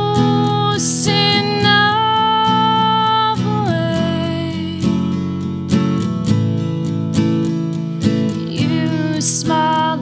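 A woman singing long held notes over her own steadily strummed acoustic guitar, a solo acoustic country-folk performance.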